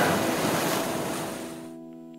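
A whooshing noise from a closing logo sting, fading away steadily. The noise cuts off near the end, leaving a held chord ringing faintly.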